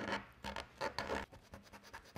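Felt-tip marker scratching across a card stencil in a run of short, quick strokes, the loudest in the first second, as the letters are coloured in.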